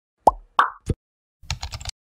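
Animated-intro sound effects: three quick cartoon plops about a third of a second apart, the first dropping in pitch, then a short run of rapid keyboard-typing clicks near the end as text is typed into a search box.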